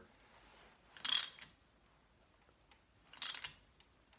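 Ratchet wrench clicking in two short bursts about two seconds apart as a spark plug is turned into a Norton Commando cylinder head: the final quarter turn after the plug bottoms out, crushing its sealing washer.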